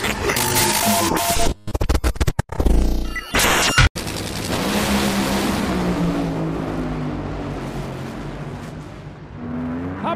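For about the first four seconds, intro music and choppy edited transition sounds. Then supercharged nitromethane Funny Car engines run at full throttle down the drag strip, a loud rough roar that slowly drops in pitch and fades as the cars pull away.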